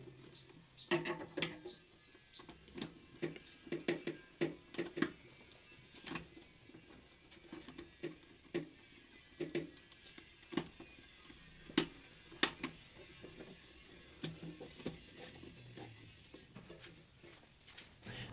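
Irregular light clicks and taps of a screwdriver and wire ends being worked at the terminals of DIN-rail miniature circuit breakers, some taps with a brief low ring.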